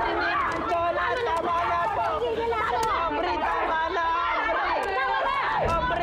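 Several people yelling and screaming over one another in a hair-pulling scuffle, a steady din of overlapping voices with no clear words.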